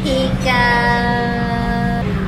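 A voice holds one long, level sing-song note in a game of peekaboo, over a steady low hum.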